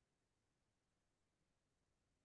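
Near silence: a muted or idle video-call feed with only a faint, even noise floor.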